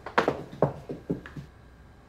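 Irish dance steps on a wooden floor: a handful of sharp taps and knocks that stop about halfway through.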